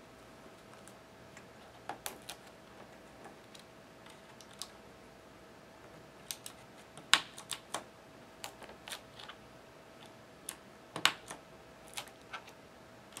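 Plastic keycaps being pressed onto the blue-stemmed Cherry MX switches of a Razer BlackWidow Ultimate 2013 mechanical keyboard: scattered sharp clicks at irregular intervals, the loudest about seven and eleven seconds in.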